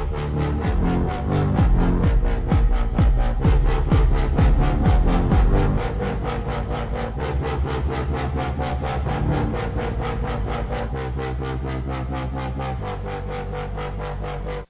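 Electronic dance sample from BandLab's EDM Creator Kit, triggered from a controller pad: a really long sample with a fast, steady beat and heavy bass. It is a little louder in the first half, then settles to a steadier bass pattern.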